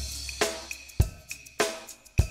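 Drum-kit backing beat of a children's chant: kick and snare hits just under two a second, with cymbals and hi-hat ringing between them.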